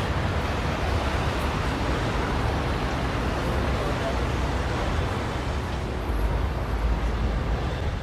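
Steady ambient background noise with a deep low rumble, like distant traffic, with no music. It drops away at the very end.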